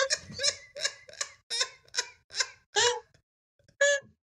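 A person laughing in a run of short bursts, about three a second, that stops about three seconds in.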